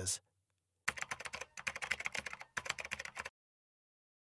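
Keyboard typing sound effect: rapid key clicks in three short runs, stopping about three seconds in.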